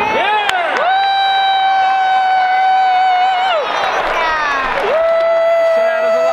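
A woman's voice singing two long held notes close to the microphone, each sliding up into a steady pitch held for about three seconds, over the noise of a stadium crowd.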